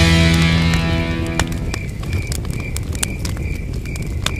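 Advert background music fading out over the first two seconds, leaving a campfire crackling with sharp pops. A short chirp at one steady pitch repeats about three times a second.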